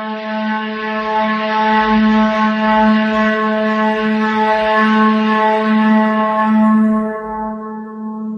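One long, steadily held note from a blown wind instrument, breathy over a low fundamental, easing off near the end.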